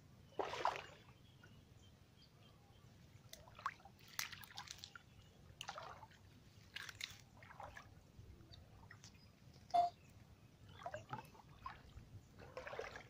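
Shallow floodwater sloshing and splashing in irregular short bursts as someone wades through flooded shrubs and reaches into the water to work a gill net line. The loudest event is one short, sharp sound about ten seconds in.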